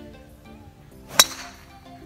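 Driver striking a golf ball off the tee: one sharp, metallic crack about a second in, with a brief ringing tail. The drive is skied, a 'tempura', but goes straight. Background music with plucked guitar plays throughout.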